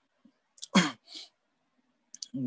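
A person sneezing once: a sudden loud burst just over half a second in, followed by a brief softer hiss.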